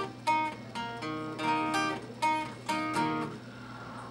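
Acoustic guitar played between sung lines, a run of chords struck about two or three times a second, ringing out and growing quieter near the end.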